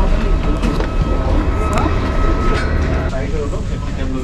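Steady low machine rumble with a faint, steady high whine, under passengers' voices.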